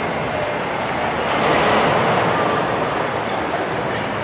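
Steady din of a busy indoor amusement hall: a dense wash of crowd noise with a few faint distant voices, swelling slightly in the middle.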